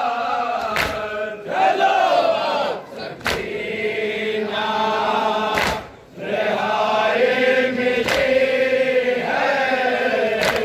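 A crowd of men chanting a nauha, a Shia mourning lament, in unison behind a lead reciter, with a sharp thump about every two and a half seconds from the mourners beating their chests (matam) in time.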